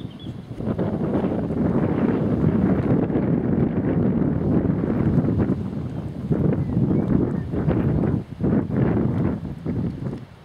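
Wind buffeting the microphone: loud, gusty noise that sets in about half a second in and dips briefly twice near the end.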